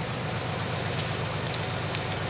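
An engine idling steadily, heard as a constant low hum, with a couple of faint brief clicks.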